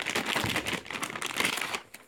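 Clear plastic wrapping crinkling and rustling as a battery pack is handled and unwrapped, an irregular crackle that stops shortly before the end.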